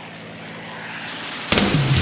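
A steady drone from the propeller engines of P-51 Mustang fighters on an old film soundtrack, growing slowly louder. About three-quarters of the way through, loud heavy rock music cuts in suddenly with drums and electric guitar.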